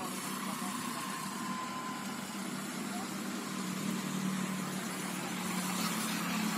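A steady engine-like hum: a low drone with a hiss over it, growing slightly louder.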